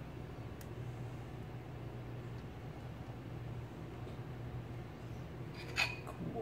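Steady low hum of a quiet kitchen, with a faint tick about half a second in and a short clink of a kitchen bowl just before the end.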